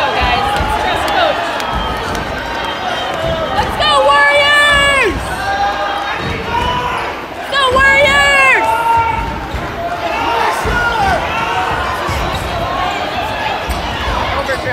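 A basketball being dribbled on a gym's hardwood court, heard amid a crowd's voices and shouts. Two loud drawn-out calls drop in pitch at the end, about four and eight seconds in.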